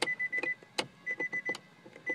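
The 2014 Nissan Altima's interior warning chime: rapid short electronic beeps at one steady pitch, coming in groups about once a second, with a few sharp clicks from the interior fittings being handled.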